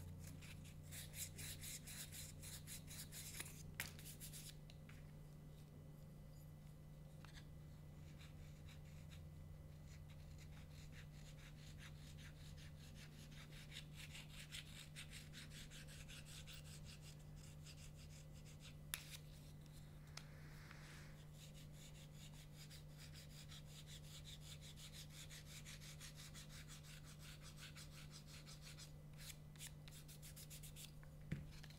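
Sandpaper rubbed in quick short strokes across a piece of double-reed cane for the first few seconds, then a knife scraping thin shavings off the cane in faint, repeated strokes as the reed blank is profiled.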